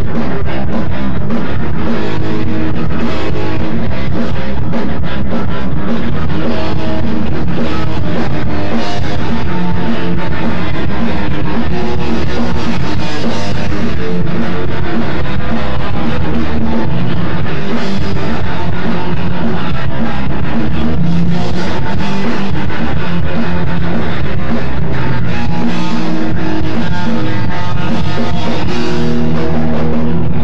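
A live rock band playing an instrumental passage: electric guitar, bass and drum kit with cymbals, loud and steady throughout.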